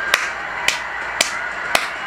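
Hand claps, four in a slow even run, about two a second, over a steady background noise.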